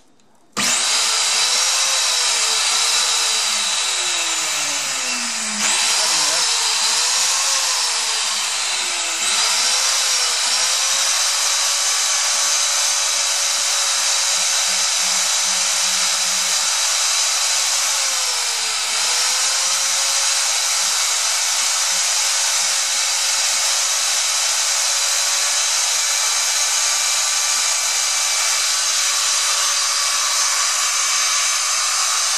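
Brushed universal motor of a Ridgid WD14500 shop vacuum, out of its housing on the bench, switched on about half a second in and running at full speed on mains power: a loud whine with a hiss. Its pitch wavers for the first ten seconds or so, with two steps up in loudness, then holds steady; the motor is working normally.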